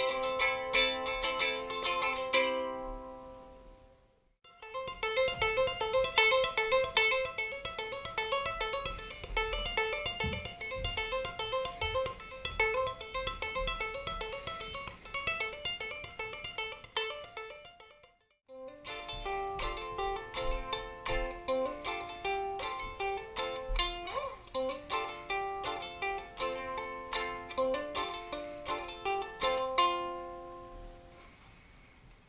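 Homemade concert-sized acoustic travel ukulele with a spruce top and mahogany body, played in three takes. First come strummed chords that die away about four seconds in, then a fast run of picked notes, and after a short silence more strummed and picked chords.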